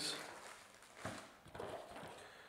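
Faint rustling and a couple of soft knocks from a cardboard product box and its plastic packaging being handled during unboxing.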